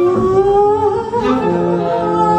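A woman's voice singing an improvised free-jazz vocal line. It slides upward and wavers, then settles on a steady held note in the second half.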